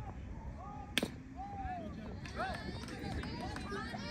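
One sharp crack about a second in, a softball bat striking the ball, with people's voices calling around it.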